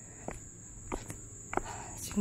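A steady, high-pitched insect chorus of crickets and other night insects, with three footsteps about half a second apart as someone walks downhill.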